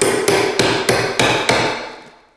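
Rubber mallet repeatedly striking a steel flat pry bar (wonder bar), about three blows a second with a slight metallic ring. The pry bar is levering a hardwood floor board into its joint to close it up tight.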